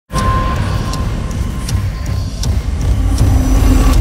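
Heavy low rumble with scattered sharp knocks and clicks, a steady hum coming in over the last second; the higher sounds cut off abruptly at the end.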